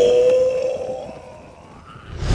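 A long, held scream from someone falling, dipping slightly in pitch and fading away over the first second and a half.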